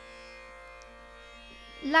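Steady tanpura drone sounding on its own, many held tones ringing together; a woman's voice comes in near the end.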